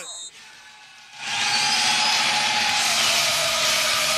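After about a second of low sound, a steady, loud rushing noise comes in and holds, with faint steady tones in it. It is a recorded sound effect leading into the radio station's sponsored goal spot.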